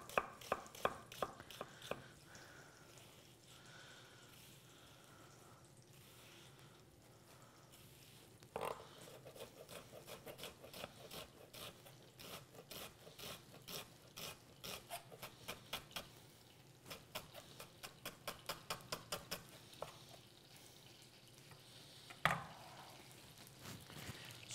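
Chef's knife finely dicing an onion on an end-grain wooden chopping board: quick, even knocks of the blade on the wood, about four a second. The chopping pauses briefly after the first couple of seconds and picks up again about eight seconds in.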